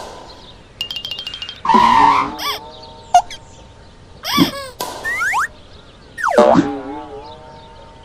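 Cartoon sound effects: a quick rattle of ticks, a whoosh, a sharp hit, and springy boing-like sliding tones that rise and fall, over light background music.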